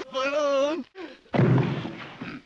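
A man's voice in a drawn-out, wavering whine, then about 1.4 s in a sudden loud bang that dies away quickly.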